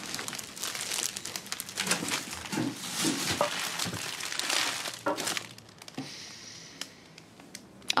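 Clear cellophane wrapping on a bouquet of lilies crinkling as the flowers are handled and stood in a vase; the crackling is busiest for the first five seconds and then thins out.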